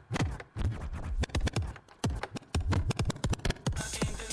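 A track being scratched with the jog wheel of a Numark Mixtrack Pro DJ controller, played back through DJ software: choppy back-and-forth cuts of the music with short gaps between them.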